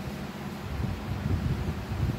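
Black cloth trousers being handled close to the microphone: irregular low rustling and rubbing that grows louder about a second in.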